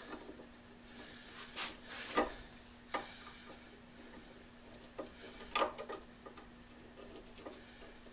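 Screwdriver tightening screws on a small electric motor: a few short clicks and scrapes of the tool on the screw heads, a couple of them grouped around two and five to six seconds in, over a faint steady hum.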